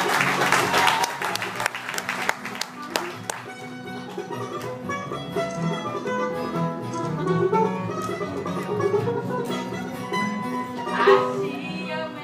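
Live acoustic bluegrass band playing: mandolin, acoustic guitars and upright bass. It is loud and dense for the first couple of seconds, then lighter picking follows, and a voice comes in briefly near the end.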